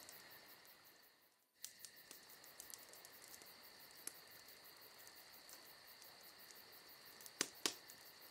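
Near silence: a faint, steady high-pitched ringing with scattered soft ticks, cutting out completely for a moment about a second and a half in, and two sharper clicks near the end.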